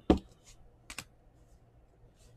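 A few short, sharp clicks of trading cards and plastic card holders being handled: one at the start and two close together about a second in.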